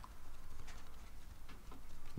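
Faint handling sounds of a thick white card panel held and moved in the hands, with a few light taps and rustles of the card stock.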